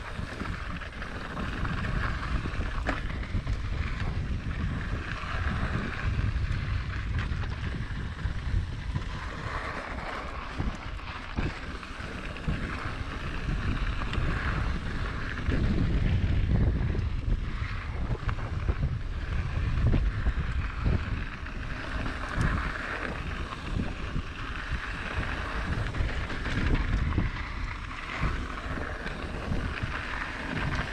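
Mountain bike rolling fast down a dirt singletrack: wind buffeting the microphone over a low tyre rumble, with frequent short knocks and rattles as the bike goes over bumps.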